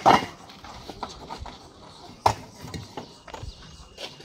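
Fired clay bricks clacking as they are set down on a brick stack: a sharp knock right at the start and another a little over two seconds in, with lighter taps between.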